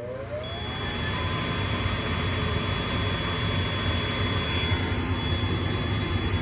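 Furnace draft inducer motor spinning up with a rising whine, then running steadily. About half a second in, a clamp meter's continuity tester starts a steady high beep: the pressure switch has closed now that the inducer pulls enough vacuum through its cleaned-out port.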